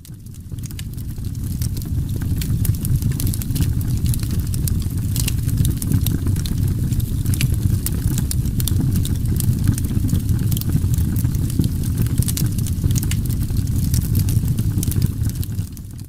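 Fire crackling: a steady low roar that fades in over the first couple of seconds, with frequent sharp pops throughout.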